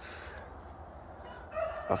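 A rooster crowing: one long, steady-pitched call that starts about a second and a half in and carries on as a man starts talking.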